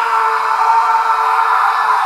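A loud, steady buzzing tone held at one fixed pitch, cut in abruptly.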